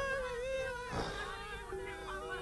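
A long held high note that wavers slightly and dips just before a second in, followed by a lower, steadier held note.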